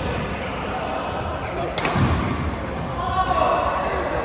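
Badminton rackets striking shuttlecocks in a large, echoing hall: a few sharp smacks, the loudest just under two seconds in followed by a low thud, over the murmur of other players.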